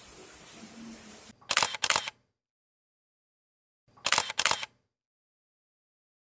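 Faint steady hiss of rain for about a second. Then a camera-shutter click sound, dead silence, and a second shutter click about two and a half seconds later.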